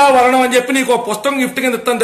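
Speech only: one voice talking continuously.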